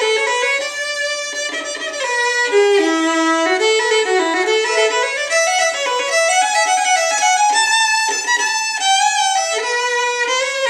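An old Klingenthal violin from about 1875–1880, strung with Helicore medium tension strings, bowed in a continuous melody with the notes stepping up and down.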